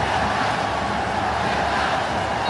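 Large stadium crowd cheering a goal, a steady wall of noise.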